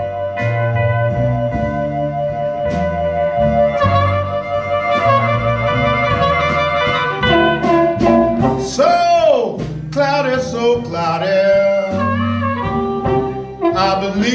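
Live electric blues band: an amplified harmonica holds one long note for several seconds, then bends sharply down and back up partway through, over upright bass, electric guitar and drums.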